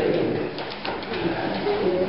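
Several people talking at once in a room, their voices overlapping so that no words come through, with a few light knocks in the first second.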